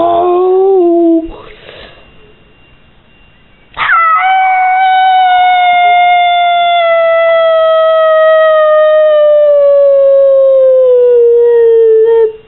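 A short howl at the start, then after a pause one long, loud howl held for about eight seconds, slowly falling in pitch.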